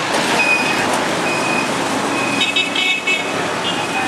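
Street traffic noise with vehicle horns: a short toot about half a second in, another just after a second, then a longer horn blast with a second horn over it from a little past two seconds until near the end.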